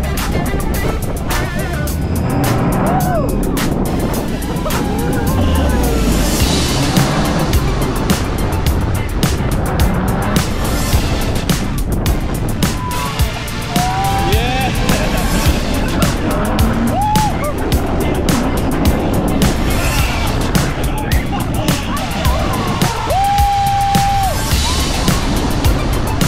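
Background music with a steady beat laid over the noise of the Pantheon launched steel roller coaster in motion: the train running along the track and rushing wind, with short rising and falling cries from riders now and then.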